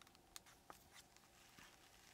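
Near silence, with a few faint ticks and a soft rustle as a washed wool lock is drawn across the wire teeth of a hand carder.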